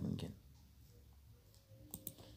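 A voice trailing off at the start, then quiet room tone broken by a single sharp click near the end.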